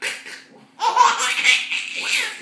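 A baby laughing: a brief burst, then a longer run of giggling from about a second in.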